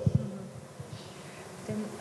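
A faint steady low buzzing hum in a pause between speakers, with the last word of speech dying away in the hall's echo at the very start.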